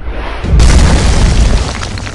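Cinematic impact sound effect from a TV intro: a whoosh builds into a loud, deep boom about half a second in, which holds for about a second and then starts to die away.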